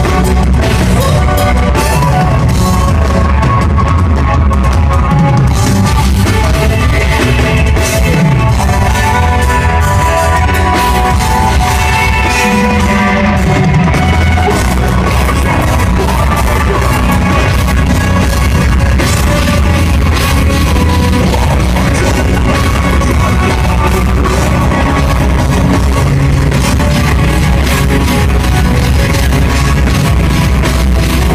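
Live death metal band playing loudly: distorted electric guitars over fast drumming on a full drum kit, heard from the crowd in the venue.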